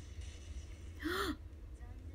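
A young woman's short, breathy vocal sound about a second in, a brief exhale-like gasp with a quick rise and fall in pitch, over a steady low electrical hum.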